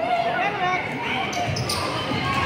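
A basketball bouncing on a hardwood gym floor, with people's voices talking and calling over it.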